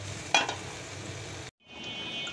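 A pot of hilsa fish curry simmering with a steady sizzling hiss, and a spoon knocks once against the pot near the start. The sound cuts off abruptly about halfway through.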